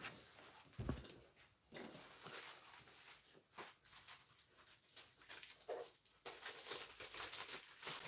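Quiet room tone with a few faint, scattered soft clicks and knocks, a low thump about a second in and a brief faint pitched sound a little before six seconds.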